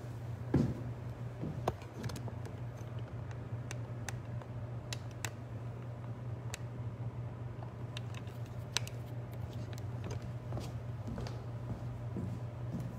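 Handling noise: scattered light clicks and taps, with a louder knock about half a second in, as the camera and things on the table are moved, over a steady low room hum.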